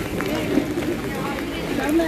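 Indistinct voices of several people close by, talking over one another in a packed crowd.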